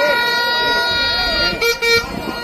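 A horn holding one long steady note, then giving two short toots near the end, over the chatter of a crowd.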